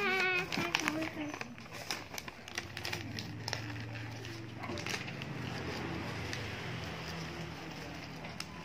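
A sheet of paper being crumpled and squeezed into a ball by hand, making many small irregular crackles and rustles. A child's voice is heard briefly at the start.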